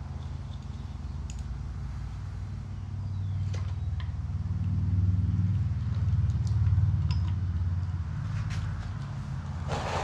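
A steady low engine-like hum that grows louder through the middle and eases off again, with light metallic clicks from hand tools on the ATV's oil filter cover screws and a sharper knock near the end.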